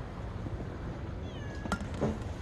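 A cat gives one short meow, falling in pitch, over a steady low background rumble, followed at once by a sharp click.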